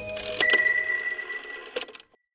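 Music fading out into an animated end-card sound effect: two sharp clicks about half a second in, then a single high ringing tone that fades over about a second and a half over light fast ticking, with another click near the end.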